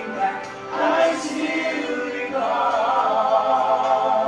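A choir singing a Christian song with musical accompaniment, growing louder about halfway through.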